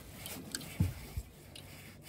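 Faint rubbing and light clicks, with two soft low thumps in quick succession about a second in.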